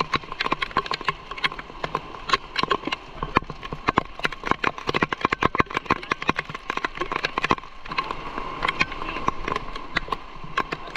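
Heavy rain falling on an umbrella and on the camera close by: dense, irregular sharp taps of large drops.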